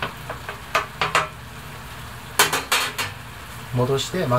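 Cookware clinking as pieces of chicken breast are put back into a frying pan of simmering nikujaga: a run of light clicks in the first second or so, then a louder cluster of clatters past the middle.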